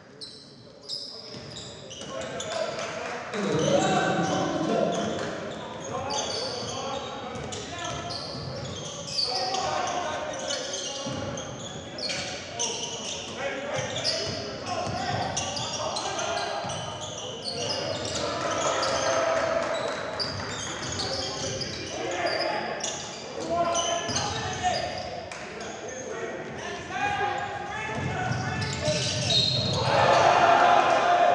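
Basketball bouncing on a hardwood court during live play, with players and coaches shouting, echoing in a large gym.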